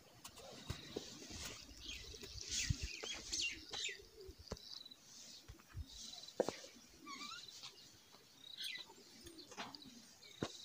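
Birds chirping and calling, with a short high trill that recurs every few seconds and some cooing. Scattered soft knocks come through, one sharper knock about six seconds in.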